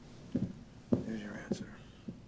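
Quiet speech: a short, low line of dialogue, spoken softly in brief pieces.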